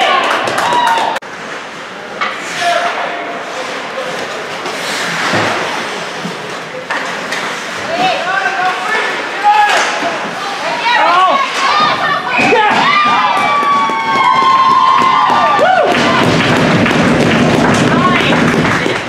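Ice hockey game sounds in an indoor rink: players and onlookers calling out, their voices echoing, with occasional sharp thuds and knocks against the boards and glass.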